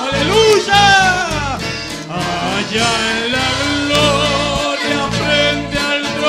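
A congregation and a lead singer on a microphone singing a Spanish-language worship song over a band with a bass line.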